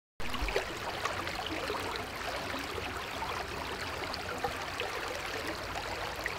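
Shallow stream flowing over stones, a steady rush of water that cuts in just after the start.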